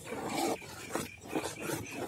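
A spoon beating thick gram-flour batter for boondi in an aluminium bowl: wet, rough strokes repeating every few tenths of a second.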